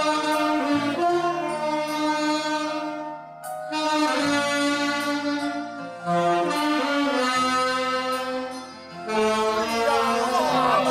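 Saxophone ensemble playing a slow melody in long held notes over a low bass line, in phrases with short breaks about three and nine seconds in.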